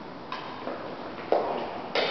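Badminton rackets striking a shuttlecock in a doubles rally: three sharp hits in quick succession, the last ringing on briefly in the reverberant hall.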